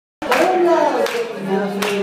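A live band starting to play, beginning abruptly: a pitched note slides and then holds steady over sharp percussive hits about every three quarters of a second.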